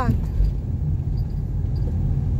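Car cabin noise while driving: the steady low rumble of the engine and the tyres on a rough, patched road surface.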